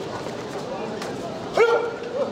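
A single short, loud shout about a second and a half in, over the steady murmur of the sports hall.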